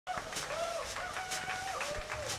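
Chickens clucking and calling: several drawn-out calls that rise and fall in pitch, with short sharp clucks between them.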